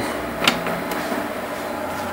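A single click from a push-button on a Tektronix PS280 bench power supply being pressed, about half a second in, over a steady low hum.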